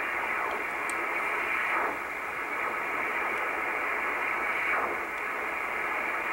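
Icom IC-R8500 communications receiver in upper sideband, giving a steady shortwave hiss as the dial is tuned across the 24 MHz band. A few faint whistles sweep up and down in pitch as it passes weak signals.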